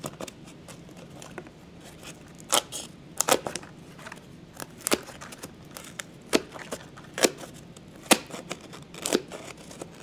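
Left-cut aviation snips cutting through a vacuum bag in which the epoxy resin has hardened, trimming around a fiberglass frisbee. About eight sharp snips come roughly once a second, starting a couple of seconds in.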